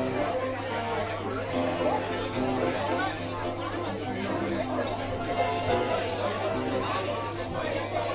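Background music with held notes playing over the chatter of many people talking, with a steady low hum underneath.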